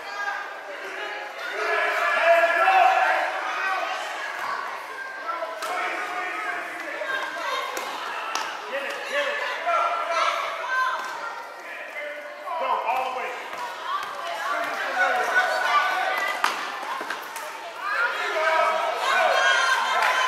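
Gym noise during a youth basketball game: overlapping voices of players and spectators in an echoing hall, with a basketball bouncing on the court and scattered short knocks and thuds.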